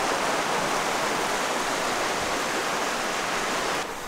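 Steady rushing noise, even and unbroken throughout, that drops away just before the end.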